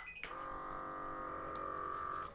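KneeFlow knee massager switching on: a short electronic beep, then a steady, even hum from its small internal motor as the device starts running.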